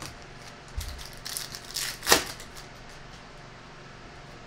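Trading cards being handled: a few short clicks and rustles as a stack is picked up off the mat and the cards are slid against each other, the sharpest about two seconds in.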